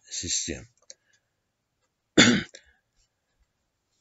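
A person coughing twice: a short cough at the very start and a louder, sharper cough a little past halfway, with a faint click between them.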